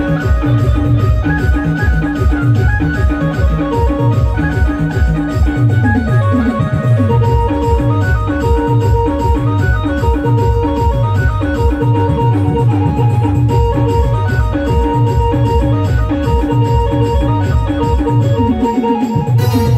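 Electronic keyboard playing a timli dance tune in an organ-like voice, sustained melody notes over a fast, steady drum beat.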